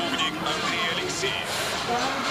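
Speech over background music, both coming from the parade video being played.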